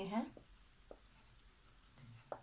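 Marker pen writing on a whiteboard: a few faint, short strokes as a word is written out.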